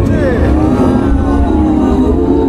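Dark-ride show soundtrack playing through the ride's speakers: cartoon music and sound effects, with tones that sweep and glide in pitch over a deep, steady rumble.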